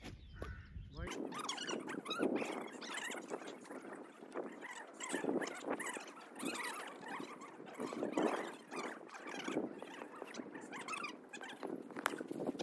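Many birds chirping and chattering continuously, a dense mass of short high squeaky calls with no let-up.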